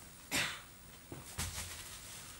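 A black plastic trash bag rustling in two short bursts, the second with a soft thump as the bag is dropped onto the wooden stage floor.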